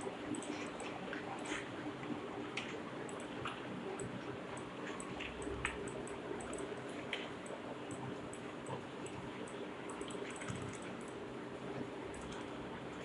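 Irregular light clicks of a computer mouse and keyboard, a few a second, over a steady low room hum.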